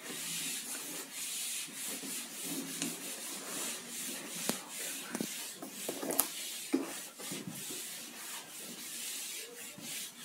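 A whiteboard eraser rubbed back and forth over a whiteboard, wiping off marker writing in repeated scrubbing strokes. A few sharp knocks come around the middle.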